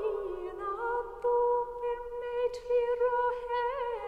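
Unaccompanied female voice in a slow Irish keen (lament), holding long notes with small ornamental turns between them.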